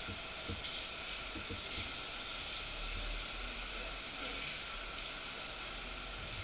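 Steady background hiss with a low hum underneath and a few faint light ticks: room and microphone noise in a pause between words.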